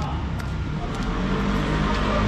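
Street traffic: a car's engine and tyres approaching along the road, growing steadily louder over a low traffic hum.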